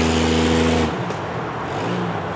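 Jeep Cherokee engine running steadily under throttle off-road, then backing off suddenly about a second in and going quieter, with a fainter engine note returning near the end.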